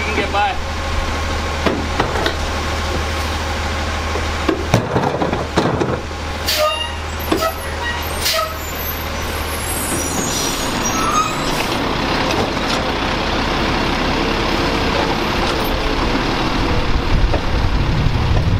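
Garbage truck engine running steadily, with clanks and knocks as a trash cart is tipped into a rear loader's hopper. After about ten seconds this changes to a louder automated side-loader's engine and hydraulic arm working as it lifts a cart.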